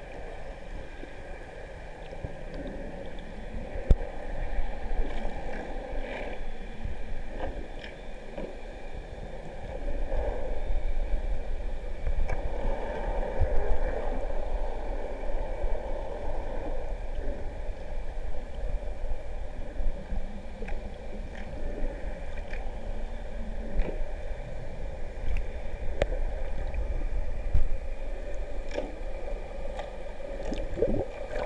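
Underwater noise picked up by a camera in its waterproof housing: a muffled, steady rumble and wash of water with scattered small clicks, louder from about ten seconds in.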